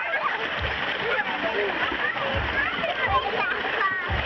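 Water splashing and sloshing in a shallow pool as children wade and play, with many children's voices chattering and calling throughout.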